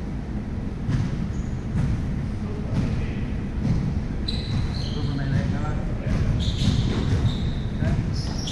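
Echoing noise of a busy sports hall: a thud about once a second, short high-pitched squeaks and indistinct voices.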